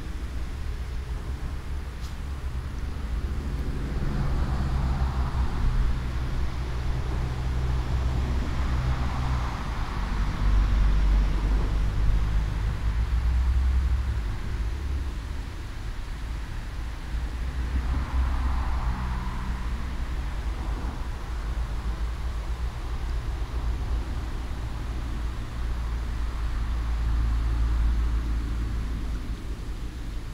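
Road traffic noise, a steady low drone with several vehicles swelling louder and fading as they pass, around 5, 10 and 19 seconds in.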